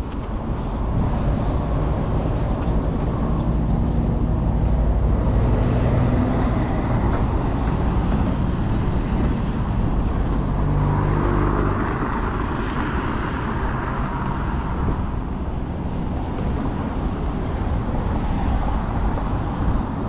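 Road traffic passing close by: car and lorry engines running, with a steady low rumble and the sound of passing vehicles swelling and fading around the middle.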